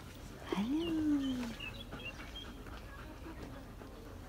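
A Samoyed gives one drawn-out vocal 'woo' about half a second in. It rises quickly in pitch, then slowly falls over about a second.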